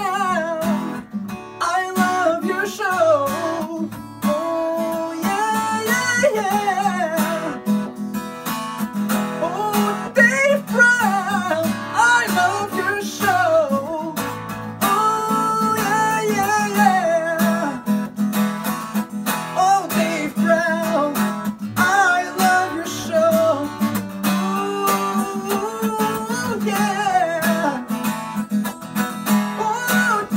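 A song: strummed acoustic guitar with a singing voice carrying a wavering melody over it.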